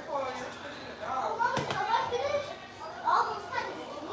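A child's voice talking and playing, high-pitched and unclear, with a single sharp knock about one and a half seconds in.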